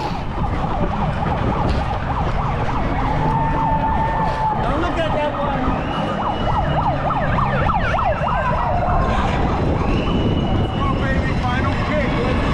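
A siren sweeping up and down in pitch, loudest in the middle of the stretch, over a steady, loud background of noise.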